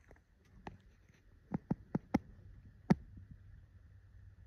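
A quick run of about six sharp clicks and knocks in under two seconds, the last the loudest: handling noise from the camera being shifted against the optic it films through.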